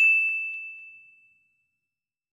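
Notification-bell sound effect: a single bright ding that rings out and fades away within about a second and a half.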